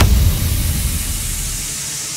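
A dance track breaks off into a white-noise sweep, the hiss effect used as a transition in an electronic dance music mix. A deep bass tail dies away under it over the first second and a half, and the hiss slowly thins toward the top.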